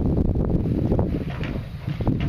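Wind buffeting the microphone as a loud, steady low rumble, with a few faint short knocks on top.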